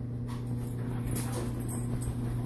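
A dog whimpering in short, faint cries in excitement, over a steady low hum.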